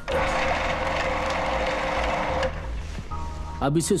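Food processor running, blitzing chunks of raw salmon into a paste; the motor's steady whir cuts off suddenly about two and a half seconds in.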